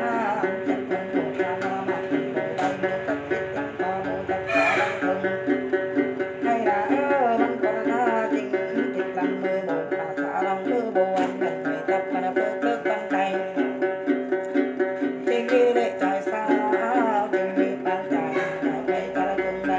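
Đàn tính, the long-necked gourd lute of Tày–Nùng Then, plucked in a steady, evenly repeating rhythmic figure, with a voice singing Then phrases over it at times.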